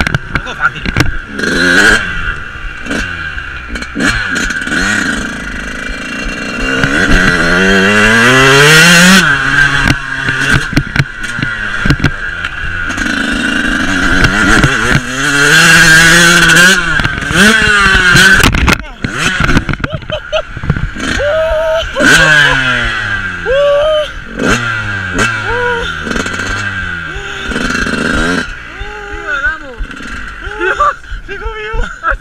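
Dirt bike engine heard from on board, revving hard with its pitch climbing and dropping again and again as the throttle opens and closes, with two long rising pulls in the first half. It eases off into shorter throttle blips in the second half.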